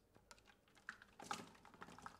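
Water poured from a plastic pitcher onto the paper cups of a homemade cardboard water wheel, heard as a faint run of small irregular splashes and ticks that grow busier about a second in.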